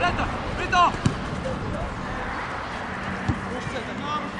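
Football players shouting to each other on the pitch. A leather football is kicked with a sharp thud about a second in, and again more faintly near the end.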